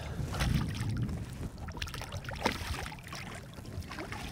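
Water splashing and sloshing at the surface beside a boat as a hooked white bass is reeled up, with a few sharper splashes, under low wind rumble on the microphone.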